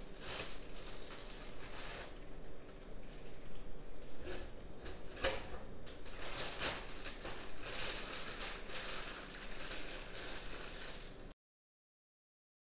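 Small irregular clicks, knocks and scrapes of handling, over a faint steady room hum; it cuts off abruptly near the end.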